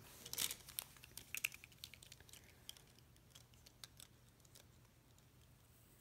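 Faint light clicks and taps of plastic pens and their packaging being handled, busiest in the first two seconds and then sparse.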